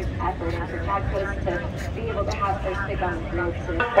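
A woman's voice over stadium loudspeakers, reverberant and not clearly worded, over a steady low rumble.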